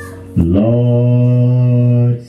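A man's deep voice holding one long, low sung note without words into a microphone, coming in about half a second in with a short upward scoop and then held steady.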